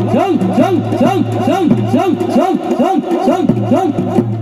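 Traditional Chholiya dance band music: a fast melodic figure that rises and falls about three times a second over a steady low drone.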